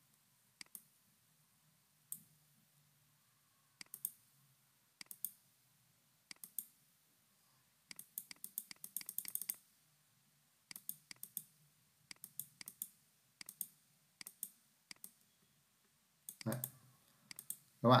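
Computer mouse buttons clicking, singly and in quick pairs, with a denser run of clicks about eight to nine seconds in.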